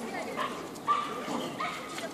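A dog whining and yipping in three short high notes about half a second apart, over people talking.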